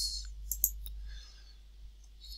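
A computer mouse clicking twice in quick succession, about half a second in, to select a spreadsheet cell, over a faint low hum.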